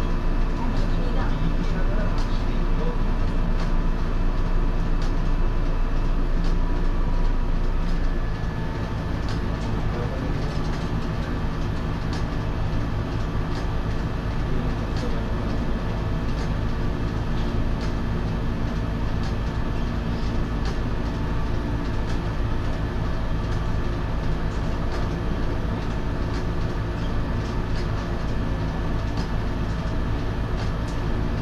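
Steady hum of a stationary MC6001 electric railcar's onboard equipment. A louder part of the hum cuts off about eight seconds in, leaving a lower steady drone.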